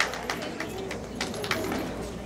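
Scattered, irregular hand clapping from a small audience after a roller skating routine ends.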